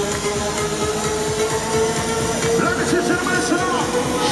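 Progressive house dance music played loud through an arena sound system, with a long held synth note over a busy beat. From about two and a half seconds in, a voice with sliding pitch comes in over the music.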